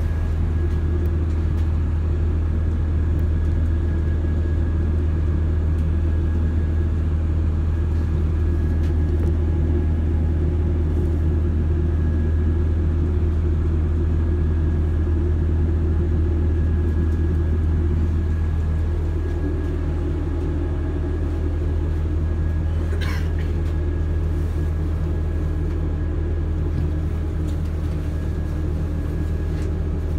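Inside a Class 170 Turbostar diesel multiple unit: the steady low drone of its underfloor diesel engine and running gear as it runs into a station. The drone eases a little about two-thirds of the way in, and a single brief sharp sound comes soon after.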